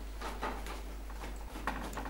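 Faint handling noises of a washing machine's front panel being pushed back into place on its clips: a few light knocks and scrapes.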